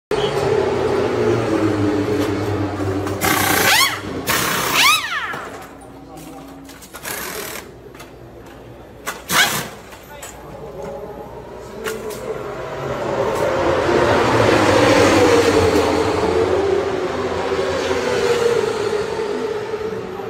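Racing motorcycle engines in a pit lane, running and passing, the pitch sweeping up and down a few seconds in and the noise swelling to its loudest in the second half, with a few sharp clicks in between.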